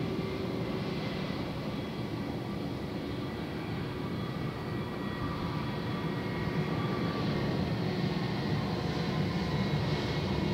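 Airbus A320's IAE V2500 turbofan engines running at taxi power: a steady jet rumble with several held tones, growing a little louder about six seconds in as the aircraft taxis closer.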